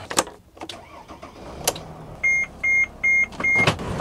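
A Mercedes Sprinter van's dashboard warning chime beeping four times, short and evenly spaced, over the low sound of its engine running, with sharp clicks at the start, in the middle and just before the end.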